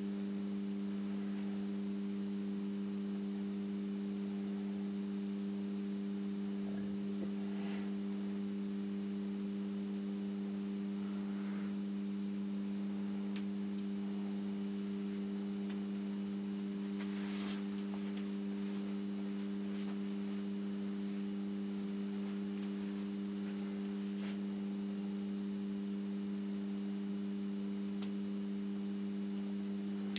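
Magnetic high-pressure sodium lamp ballasts humming steadily while running a 70 W high-pressure sodium lamp and an 80 W mercury vapour lamp, both all but fully warmed up. The hum is a low, unchanging drone of a few pitches together.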